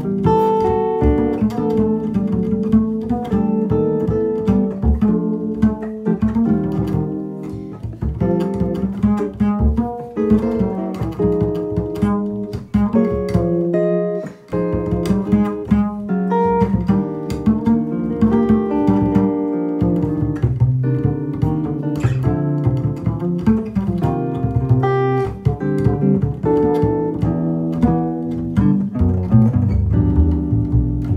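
Jazz guitar and double bass duo playing: a Gibson ES-330 hollow-body electric guitar playing chords and melody over a pizzicato upright bass line, with a brief pause about halfway through.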